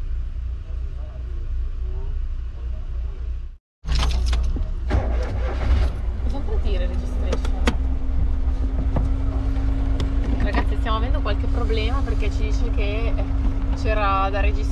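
Low rumble of a 1995 Piaggio Porter minivan's engine heard from inside the cab. A few seconds in the sound drops out briefly. After that come several clicks and knocks from handling the controls, and a little later a steady hum joins in.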